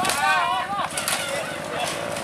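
A trail bike's engine running with a fast firing rhythm as the bike rears up and tips over backwards on a steep dirt climb, with a few knocks from the falling bike; onlookers shout in the first second.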